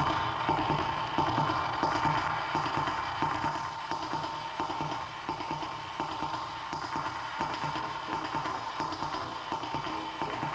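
Lo-fi avant-garde rock band music with no singing: a dense instrumental passage with a steady high tone held throughout over fast, rhythmic low strokes.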